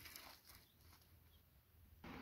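Near silence, with a few faint clicks near the start.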